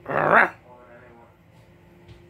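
A dog gives a single short, loud bark right at the start, a play bark during rough play between two dogs.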